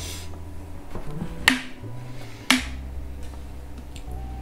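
Two sharp clinks of tableware knocking, about a second apart, each with a brief ring, over the low soundtrack of a TV series playing in the room.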